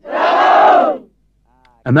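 A company of soldiers shouting together in one loud group shout lasting about a second.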